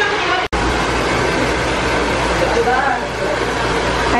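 Handheld hair dryer blowing with a steady rush, with voices faint underneath; the sound drops out for an instant about half a second in.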